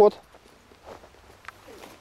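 Faint footsteps on limestone rock and gravel: a few soft scuffs and small crunches of a person walking.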